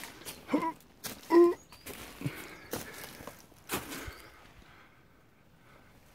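Footsteps on an earth path with the rustle of a handheld camera: a few separate steps and knocks spread over the first four seconds. A short spoken "so" and a brief sigh-like breath come in the first second and a half.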